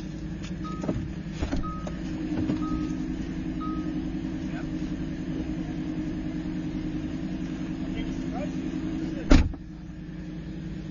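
A supercar's engine idling with a steady low hum, and four short beeps about a second apart in the first few seconds, like a car's warning chime. A loud thump near the end.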